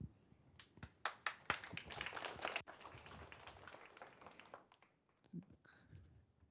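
Brief, faint applause from a small audience: scattered claps that thicken about a second in and die away after about three seconds.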